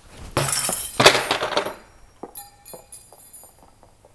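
A thrown ball hits a cabinet door and knocks it off its hinge hooks; the door crashes down onto concrete, loudest about a second in. After that the wire wave hangers and metal hooks jingle and ring, with a few light clicks, as they swing and settle.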